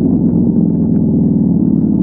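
ATV engine running at low, steady revs, a fast even pulsing from the exhaust with no change in speed.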